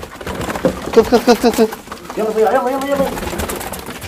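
Domestic pigeons cooing: a quick run of short notes about a second in, then a longer, wavering coo.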